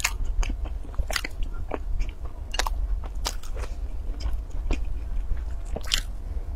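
Close-up eating sounds of a flaky baked pastry being broken apart, bitten and chewed: sharp dry crackles come every half second to a second. A steady low hum runs underneath.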